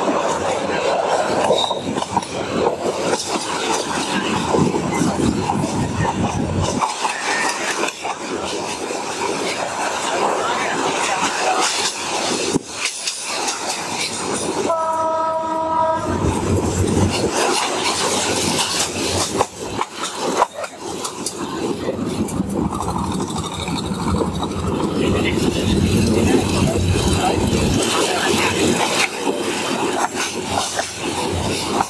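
Passenger train running at speed, heard from inside the carriage, its wheels clattering over the rail joints. About halfway through, a train horn sounds once for about a second and a half.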